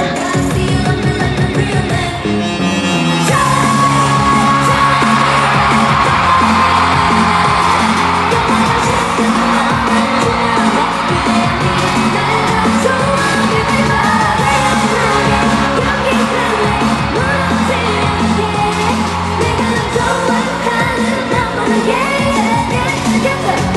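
Loud live K-pop concert music: a backing track with girl-group singing through the hall's PA, with the audience yelling and cheering over it. About three seconds in, the song changes section into a dance part with a held high note.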